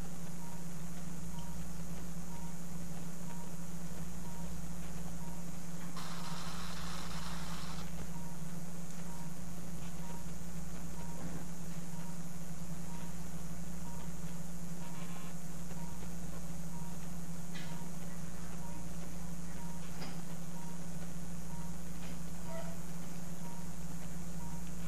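Operating-room background: a steady low equipment hum with faint short beeps repeating a little under once a second. About six seconds in there is a two-second burst of hiss.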